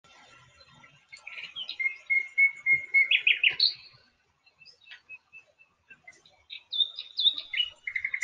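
Bird chirping: a run of short whistled notes and a held note from about a second in, a lull with a few faint chirps, then another run near the end.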